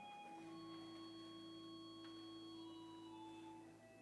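Faint, slow organ music: long held notes that sustain without fading and change one at a time.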